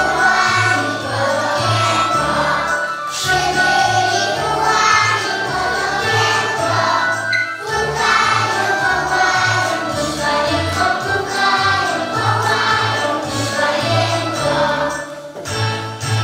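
A group of young children singing a song together over a recorded backing track with a steady bass line.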